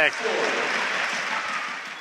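Applause from hands clapping, fading gradually over the two seconds.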